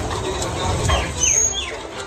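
Noisy street crowd picked up on a phone microphone: a heavy low rumble with a few short, high-pitched falling calls or chirps around the middle.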